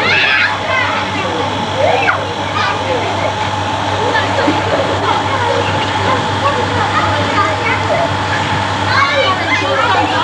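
Children calling and shouting while playing in a swimming pool, over a steady background of voices and water noise. Louder calls come just after the start, about two seconds in and near the end, with a steady low hum underneath.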